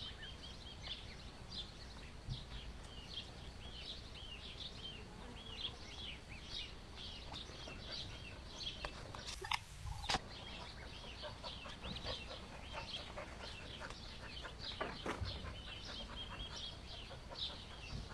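A duckling peeping over and over in short, high calls, several a second, while a cat grapples with it. A brief burst of noise ending in a sharp click comes a little past the middle.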